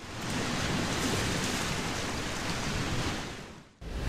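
Sea surf washing on a shore: a steady hiss that swells in and fades out just before the end.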